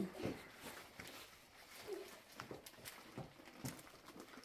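Faint rustling and scattered small clicks of a zip-top plastic trash bag being handled and pressed shut.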